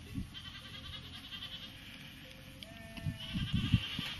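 A grazing flock of sheep and goats, with one clear bleat about two and a half seconds in, lasting about half a second. Near the end come several dull low thumps, louder than the bleat.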